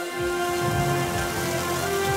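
Food sizzling on a hot flat-top griddle: a steady hiss that starts suddenly, under background music.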